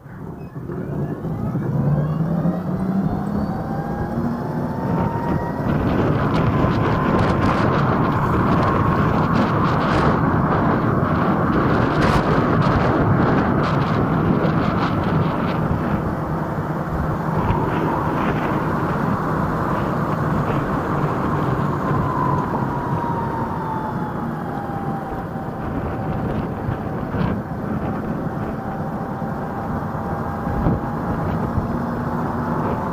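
Electric scooter pulling away from a stop: the motor's whine rises in pitch over the first few seconds, then holds steady and drops slightly after about twenty seconds as it eases off, under a loud steady rush of wind and road noise. A few sharp clicks come in the middle.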